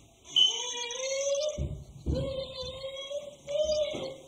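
A song begins about half a second in: a high voice sings long held notes, sliding up into the first one, with low accompaniment notes underneath.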